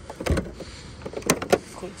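Plastic roof-rack mounting covers on a Honda Element being pried out and handled. There is a dull knock, then two sharp clicks about a second later.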